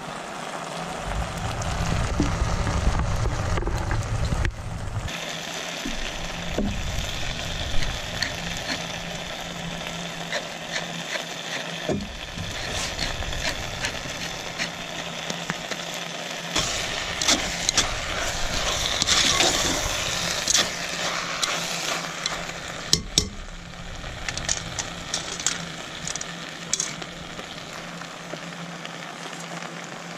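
Vegetables sizzling in a cast iron cauldron over a wood-burning stove, with scattered clicks and clinks. A low rumble sits under it for the first few seconds.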